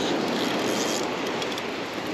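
Surf washing onto the beach: a steady rush of breaking waves.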